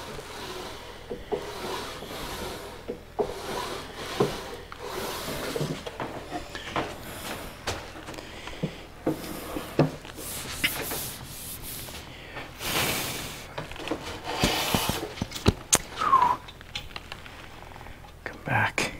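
Wooden drawer being worked in and out of its opening, wood rubbing on wood as its fit is tested. Scattered knocks throughout, and several longer scraping rubs in the second half.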